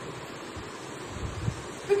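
Marker pen drawing a circle on a whiteboard: a brief low rubbing sound a little past the middle, ending in a light tap, over faint steady hiss.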